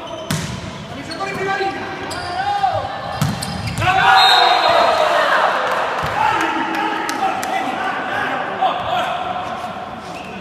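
Volleyball rally: a jump serve strikes the ball with a sharp smack, followed by a few more hits on the ball. From about four seconds in, players shout loudly as the point is won.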